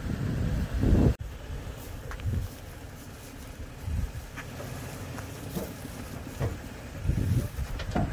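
Wind buffeting the microphone in uneven low gusts, with a loud rumble that cuts off sharply about a second in.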